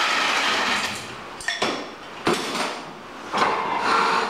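Metal clanks from a floor jack and a walk-behind tractor's steel tracks on a concrete floor as the tractor is let down off the jack. A rushing noise fills the first second, then come sharp clanks about a second and a half and two seconds in, and another near the end.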